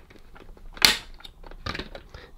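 Plastic housing clips of a Dyson AM07 tower fan being prised apart with a pry tool: small plastic clicks and scrapes, with one loud sharp snap about a second in as a clip lets go.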